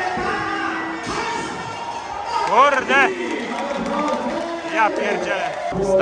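Crowd noise in a Muay Thai stadium hall, voices mixed with music, with a few short rising-and-falling calls around the middle.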